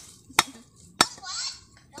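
Two sharp chops of a wide-bladed chopping knife into the top of a husk-shaved fresh coconut, about half a second apart, cutting off its top as a lid.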